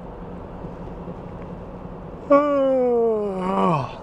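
Steady road and engine noise inside a moving car. About two seconds in, a man lets out a long voiced sigh that slides slowly down in pitch and falls away steeply at the end.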